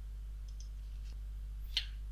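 A few faint computer mouse clicks, with one sharper click near the end, over a steady low electrical hum.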